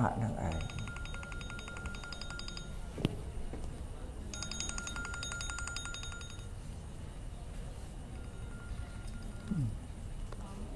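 A rapid, evenly pulsed buzzing trill sounds in two bursts of about two seconds each, a short gap apart, with a fainter third burst near the end. A single sharp click falls between the first two bursts.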